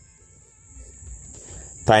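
Quiet background in a pause of speech: faint low noise with a steady high-pitched tone. A man's voice starts again near the end.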